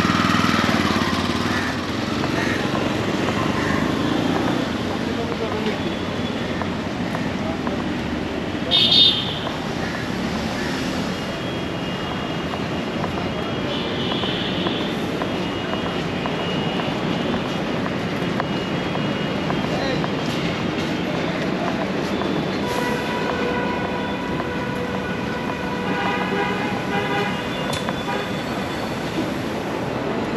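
Busy city street ambience: steady traffic noise with background voices, a short loud horn toot about nine seconds in, and repeated horn blasts over the last several seconds.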